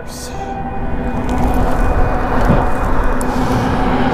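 Strong wind rushing over the microphone of a moving bicycle, building up over the first couple of seconds, with a steady droning hum running underneath.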